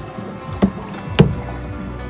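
A paddle knocking twice against a canoe, about half a second apart; the second knock is the louder, over background music.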